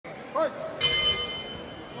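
Ring bell struck once about a second in, its tone ringing out and fading: the signal for the round to begin.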